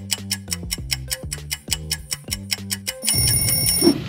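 Countdown-timer music with a fast, steady clock tick over a repeating bass line. About three seconds in, the ticking gives way to a bright, held ringing tone as time runs out.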